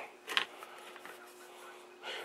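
A single short click of handling noise on the workbench about a third of a second in, as a small screwdriver and the cable are handled, then a quiet room with a faint steady hum.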